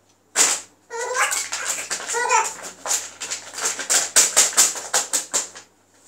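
A baby laughing: a long run of quick, breathy laughs several times a second, with high-pitched voiced squeals about a second in and again just past two seconds.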